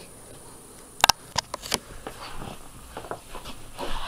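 Handling noise: a sharp click about a second in, a few lighter clicks just after, then soft rustling and faint ticks.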